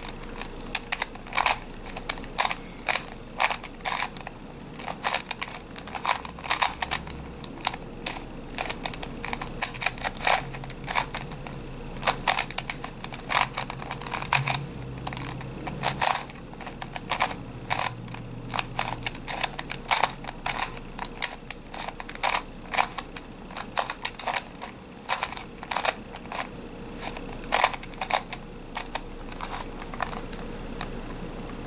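Plastic face-turning octahedron puzzle being twisted by hand, its layers clicking sharply as they turn, about two irregular clicks a second.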